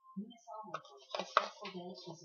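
A single sharp knock on a hard surface about a second and a half in, over faint, unclear talking.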